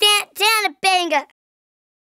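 A high-pitched voice sounding three drawn-out syllables, each rising then falling in pitch, over about the first second and a half.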